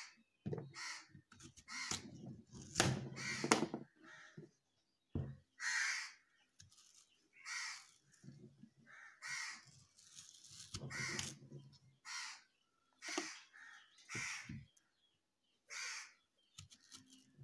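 Crows cawing again and again, a call every second or so. Among the calls are low knocks and scraping from a knife peeling a raw green mango.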